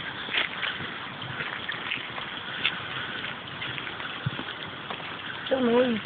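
Rushing stream, a steady hiss of water, with a person's voice heard briefly near the end.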